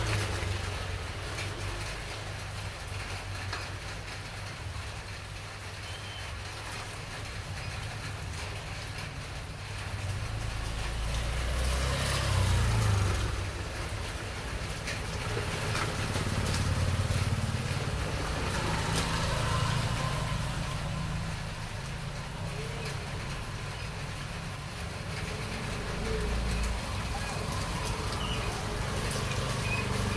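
Low background rumble of passing traffic, swelling louder about twelve seconds in and a few more times after.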